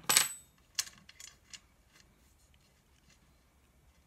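A small steel hex key set down on a wooden table: one sharp metallic clink with a brief high ring, followed by a few fainter ticks in the next second and a half.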